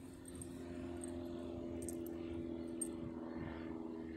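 A steady engine drone made of several held tones that shift slightly in pitch, with a few faint high clicks around two and three seconds in.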